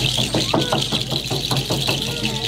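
Fast, even percussion accompanying a dance, about six beats a second, in a gap between sung phrases.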